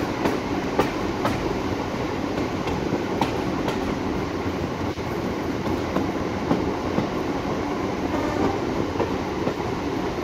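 Passenger carriage running along the track, a steady running noise with wheels clicking over rail joints at irregular intervals, heard from a carriage window.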